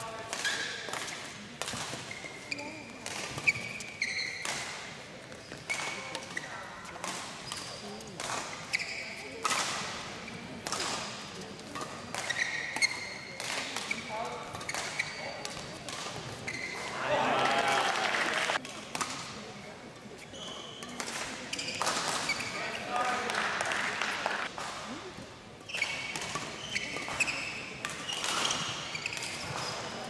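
Badminton rallies: rackets striking the shuttlecock in a string of sharp cracks, with short high squeaks of court shoes on the floor. Twice near the middle there is a louder stretch of voices.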